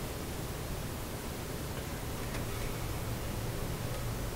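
Room tone: a steady hiss with a faint low hum underneath, unbroken and without events.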